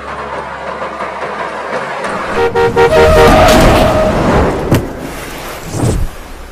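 A vehicle horn honks in quick short blasts, then holds one long loud blast over a rushing roar. Two sharp thuds follow near the end: a staged road accident, a vehicle striking a pedestrian.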